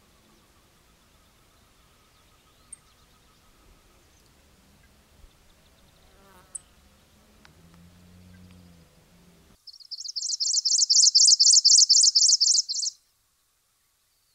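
A loud, rapid series of high chirps, about four or five a second for some three seconds, cutting off sharply. Before it, only faint outdoor ambience with a few soft clicks.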